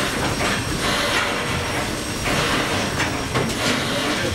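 The ship's vertical reciprocating steam engine running, a steady mechanical din with a regular beat of knocks as its rods and crankshaft turn.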